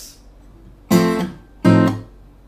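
Takamine acoustic guitar sounding two plucked chords, an F and then an F7 over A, about a second in and again near the end, each ringing out and fading.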